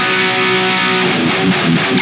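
Seven-string electric guitar through its Fishman Fluence Open Core PAF-style bridge pickup on voice two, playing a distorted metal riff in drop A tuning. A held chord rings for about the first second, then quick low palm-muted chugs follow.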